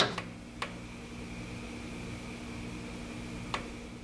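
Steady machine hum at the milling machine, with a few sharp clicks: several in the first second and one more about three and a half seconds in.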